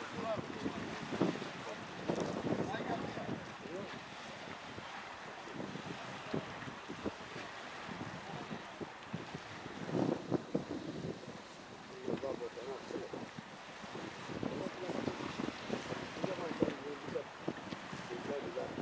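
Wind buffeting the microphone over low, indistinct talk from a group of people standing close together.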